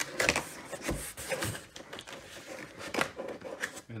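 Corrugated cardboard shipping box being handled: a few irregular knocks and scrapes of cardboard, with a dull thump about a second in.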